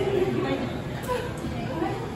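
Indistinct background chatter of several people talking in a large indoor public room.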